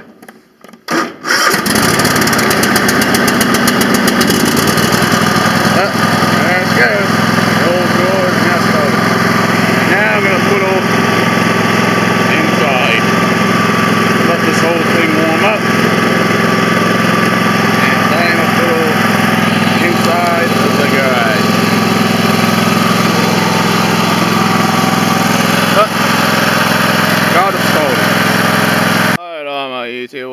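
A riding lawn tractor's gasoline engine on a cold start in freezing weather: a brief crank on the key, then the engine catches about a second and a half in and runs steadily. The sound ends abruptly near the end.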